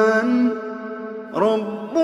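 Melodic Quran recitation by a single voice. A long held note ends and trails off in the first moments, and after a short pause a new phrase begins with a rising glide about one and a half seconds in.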